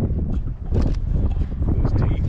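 Wind buffeting the microphone: a loud, uneven low rumble, with a few faint clicks over it.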